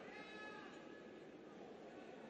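Faint arena ambience with a distant high-pitched voice calling out briefly in the first second.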